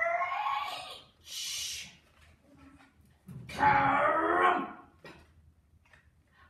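A woman's voice doing sound effects for a spaceship crash-landing: a long rising 'sssccrreeee' screech that ends about a second in, a short hiss, then a loud drawn-out 'karummp!' near the middle.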